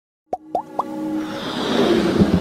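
Intro sound effects for an animated logo: three quick pops, each gliding upward and each a little higher than the last, then a whooshing swell that grows louder.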